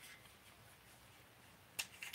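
Near silence as hands handle a baitcasting rod's grip and reel seat, broken by one sharp click near the end.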